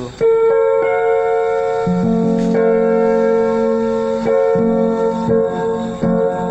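Electronic keyboard with a piano voice playing an F major chord in a new inversion: right-hand notes come in one after another in the first second, lower left-hand notes join about two seconds in, and the chord is held and restruck a few times.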